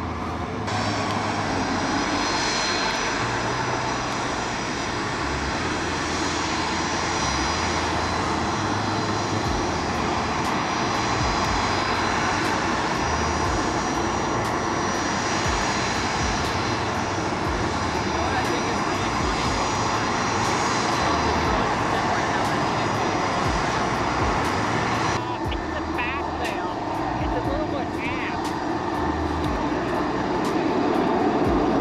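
A Bombardier CRJ-200 regional jet's two rear-mounted General Electric CF34 turbofans running at taxi power: a steady jet whine, with high tones over a broad rush. The sound changes abruptly about 25 seconds in.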